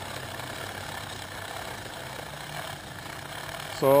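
Bicycle chain being back-pedaled through a degreaser-filled chain cleaning tool, its rotating brushes scrubbing the chain: a steady whirring, swishing noise.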